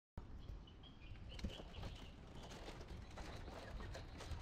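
Faint outdoor ambience with a few short, high bird chirps in the first two seconds, over a low rumble.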